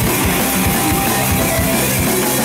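Live heavy metal band playing loud: electric guitars, bass guitar and a drum kit with frequent drum hits.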